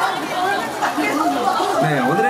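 Several people talking over one another, an overlapping chatter of voices in a room.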